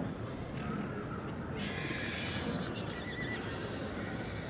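A horse whinnying faintly from about a second and a half in, over a low steady background.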